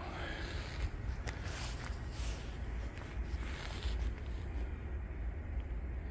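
Room tone of a large exhibition hall: a steady low hum under faint background noise, with a few faint footsteps and knocks as someone walks.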